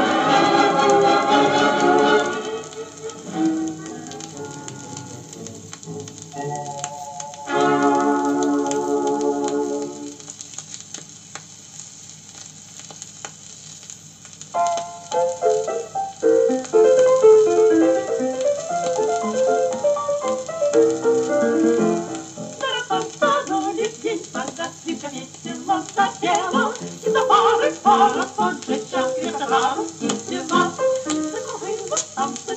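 An old Soviet long-playing record of 1950s estrada music playing through the built-in speaker of a portable suitcase record player, with a faint crackle from the record surface. Choral singing fades a couple of seconds in and returns briefly at about a third of the way through; after quieter passages, busier band music takes over about halfway and runs on.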